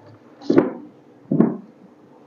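A sheet of paper rustling close up, in two short bursts: one about half a second in and one about a second and a half in.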